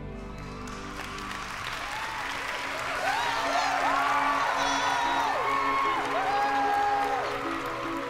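Audience applauding and cheering, building up about a second in, with soft music continuing underneath.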